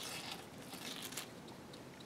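A flat paintbrush laying a wet acrylic wash on watercolor paper: faint, soft scratchy strokes, a few near the start and again about a second in.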